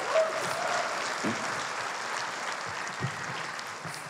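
Theatre audience applauding, easing off a little toward the end.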